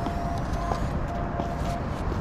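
Steady low rumble of distant city traffic, with a thin faint tone that drops in and out.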